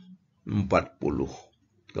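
A man's voice speaking briefly: a couple of words, with short silences on either side.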